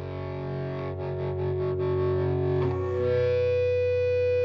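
Slow-building intro of a live band performance: sustained, effect-laden chords from guitars and keyboards swell in, pulsing briefly about a second in, then change chord past the midpoint.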